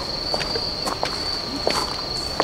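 A cricket trilling steadily on one high note, with scattered light clicks and knocks over it, the sharpest about one and a half seconds in.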